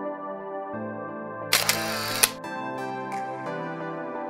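Background music of sustained chords; about a second and a half in, a camera-shutter sound effect cuts across it, a short noisy burst with a click at its start and end.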